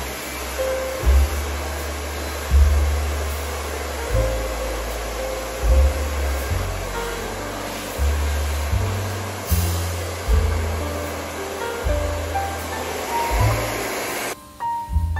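Handheld hair dryer blowing steadily, heard under background music with a deep, shifting bass line.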